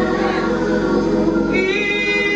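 Gospel singing: a woman sings into a microphone with other voices joining in, on long held notes.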